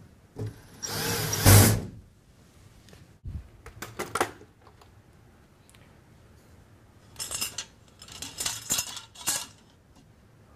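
Cordless drill/driver running for about a second, driving a screw into the sheet-metal mounting plate of a recessed-light converter. Near the end come a few bursts of metallic clinking and rattling from the chandelier chain and hardware being handled.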